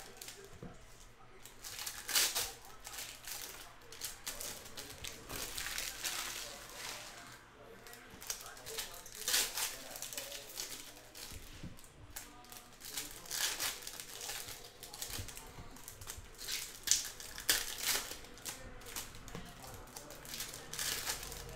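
Foil hockey card pack wrappers crinkling and tearing open in repeated short bursts, with cards handled and shuffled between them.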